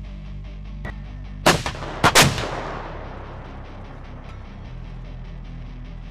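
Self-propelled howitzer firing: a loud sharp blast about a second and a half in, then two more in quick succession half a second later, dying away over about a second.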